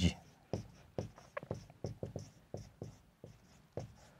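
Marker pen writing on a whiteboard: a string of short, faint strokes, with a brief squeak about a third of the way in.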